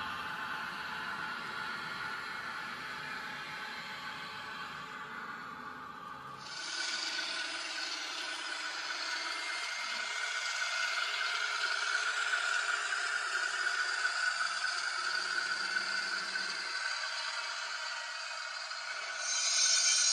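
N-scale model trains running on the layout's track: small electric motors whirring and wheels clattering and scraping over the rails. About six seconds in the sound turns brighter and thinner, losing its low rumble.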